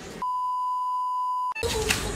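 A single steady high-pitched beep, one pure tone just over a second long. It is an edited-in censor bleep: all other sound drops out under it, and the room sound comes back near the end.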